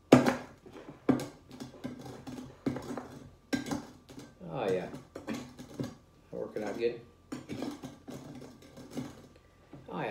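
A glass being handled on a table: a series of short clinks and knocks as its rim is wetted with lime and pressed upside down into chili-lime seasoning.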